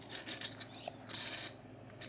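Soft rubbing and scraping of hands handling Lego bricks close to the microphone, with a faint click about a second in.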